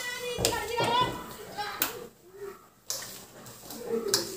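A voice talking in the first second and a half, then quieter, with a few sharp knocks scattered through.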